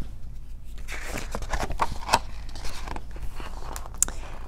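Pages of a hardcover picture book being turned and handled: paper rustling with scattered clicks and taps, busiest about a second in.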